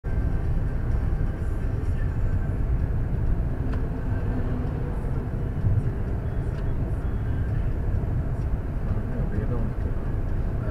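Steady low rumble of road and engine noise inside a moving car's cabin at highway speed, picked up by a windscreen dashcam's microphone.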